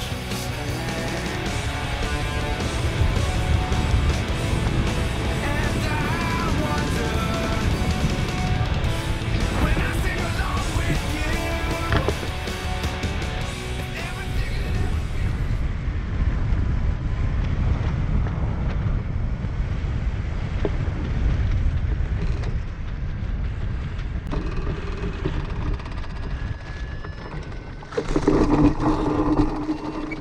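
Background music with guitar over a steady low rush of wind on the microphone for about the first half. From about halfway, wind noise alone as the hang glider glides low toward landing. A loud burst of sound near the end as it comes down.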